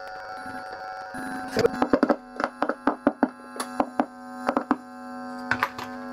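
Newly fitted Fender Pure Vintage Jazzmaster pickups being tapped with a metal screwdriver, heard through the amplifier as an irregular run of sharp clicks and thunks over a steady amp hum. It is a check that the pickups work.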